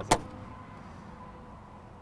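A single sharp click of a horse trailer's broom-closet door latch being released as the door is opened, just after the start.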